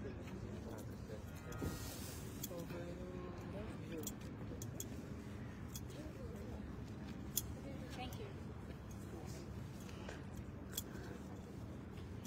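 Faint outdoor ambience: a steady low rumble with a faint hum, scattered small clicks and faint distant voices.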